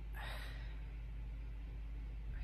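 A boy sighs once, a short breathy exhale lasting about half a second near the start, followed by a steady low hum.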